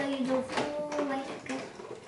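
A young girl's voice making drawn-out, wordless sounds in held, sing-song notes, stopping about a second and a half in.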